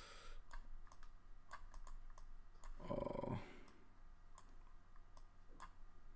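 Scattered, faint computer mouse clicks, a dozen or so at uneven intervals, with a brief hummed vocal sound about halfway through.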